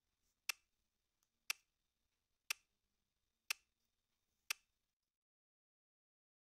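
Watch ticking, one sharp tick a second, five ticks, then it stops.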